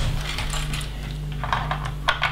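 Loose plastic LEGO bricks clicking and clattering against each other as hands sort through a pile of pieces on a table, in a few scattered bursts of small clicks.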